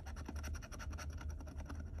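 Metal scratcher tool scraping the coating off a paper scratch-off lottery ticket in quick back-and-forth strokes, about ten a second.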